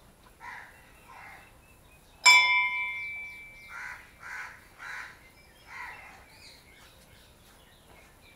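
A temple bell struck once about two seconds in, ringing out and fading over about a second. Crows caw around it, about six short caws.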